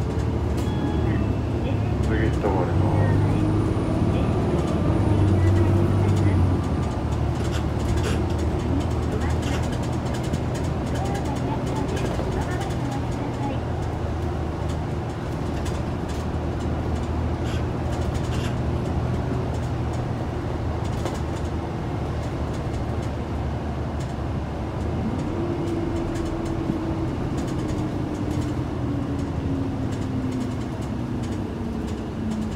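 Hino Blue Ribbon II city bus engine and automatic transmission heard from inside the cabin while driving, louder for a few seconds early on as it pulls, then running steadily. A drivetrain whine fades away at the start and comes back in the last few seconds, with light rattles and clicks from the cabin.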